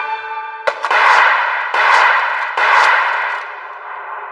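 Anime soundtrack: held music notes broken off by a sharp strike, then three loud clanging hits, evenly spaced and each ringing out.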